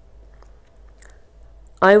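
Faint room noise with a couple of small clicks, then a woman's voice starts speaking near the end.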